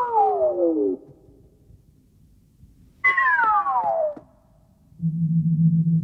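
Musical score: a falling synthesizer glide lasting about a second at the start, and a second one about three seconds in. A low steady drone comes in near the end.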